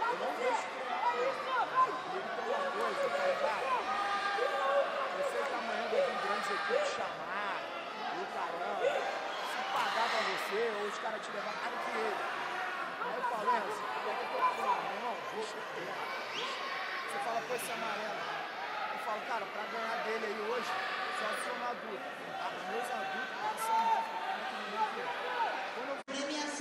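Many overlapping voices in a large, echoing sports hall, a crowd chattering with no single speaker standing out, and a few short sharp knocks scattered through it.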